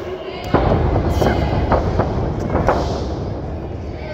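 Several sharp smacks and thuds of wrestlers striking and grappling in a ring, starting about half a second in and following every half second or so for about two seconds. Crowd voices are heard behind them.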